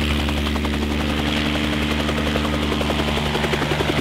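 Bell 47 crop-spraying helicopter hovering low, with a steady engine drone and rapid, even rotor chop.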